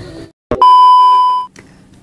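A single electronic beep: one loud, steady pitched tone about a second long, starting with a click about half a second in and cutting off suddenly, an edited-in sound effect at a cut between scenes.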